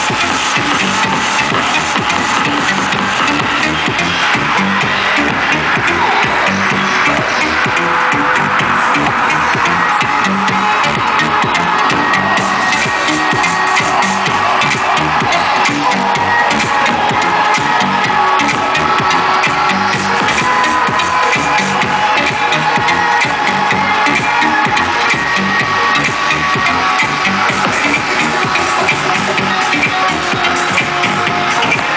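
Loud electronic dance music with a steady, driving beat.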